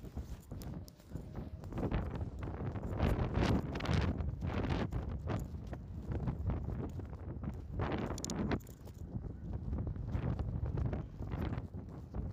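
Footsteps walking on a park path and grass, with gusty wind rumbling on the microphone.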